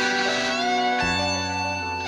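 Rock recording with no vocals: an electric guitar plays sustained lead notes, one bending in pitch, and a low bass note comes in about a second in.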